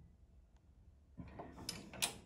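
Near silence, then faint handling noise and a small click near the end as a damper-bending tool works a vertical piano's damper wire.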